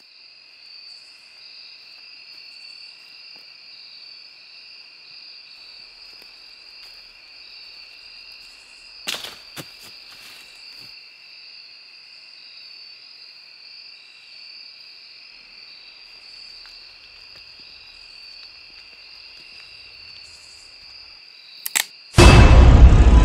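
Crickets chirping in a steady, high-pitched night chorus. Two or three sharp clicks come about nine seconds in, and another just before the end.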